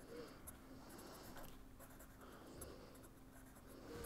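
Marker pen faintly scratching on paper in short strokes while handwriting words.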